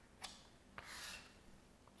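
Chalk writing on a blackboard, faint: a short tap about a quarter second in, then a longer scraping stroke around a second in.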